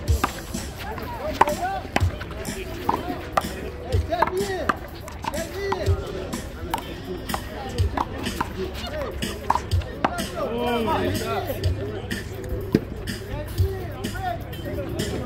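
A one-wall handball rally: a series of sharp slaps as the small rubber ball is struck by hand and hits the concrete wall, roughly one a second, over voices and background music.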